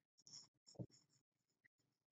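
Faint, short scratching taps of a stylus on a tablet screen as letters are handwritten, several strokes in quick succession.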